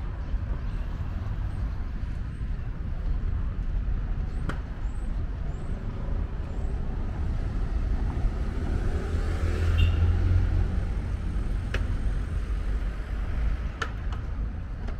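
Street traffic ambience: a steady low rumble with a car passing that swells and peaks about ten seconds in, and a few sharp clicks.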